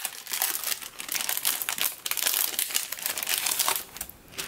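Tissue-paper and clear plastic packaging crinkling and rustling as an order is unwrapped by hand, a dense, irregular run of small crackles.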